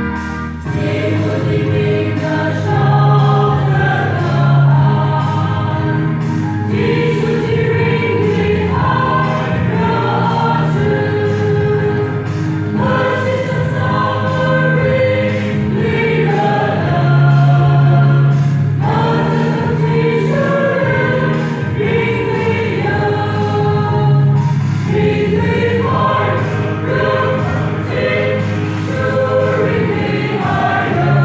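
Church choir of women singing together in long, sustained phrases, each lasting about six seconds.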